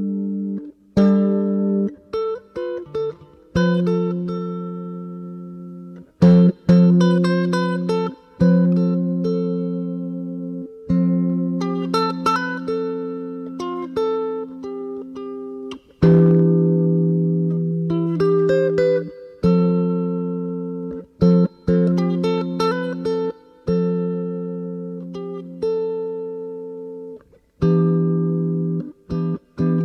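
Solo guitar instrumental: chords and single notes plucked and left to ring and fade, with short breaks between phrases.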